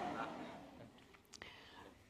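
Soft, breathy laughter without voiced tones, fading away over about the first second, followed by quiet with a faint click or two.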